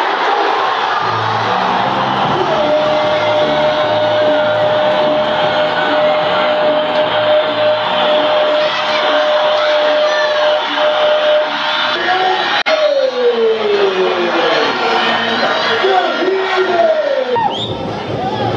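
A commentator's long drawn-out goal shout, one note held for about nine seconds that then falls away into excited calling, over a cheering stadium crowd and music.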